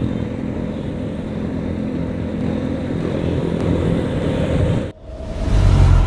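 Motor scooter running steadily under way in traffic, its engine hum mixed with wind and road noise. About five seconds in the sound cuts off abruptly and a different low rumble swells up.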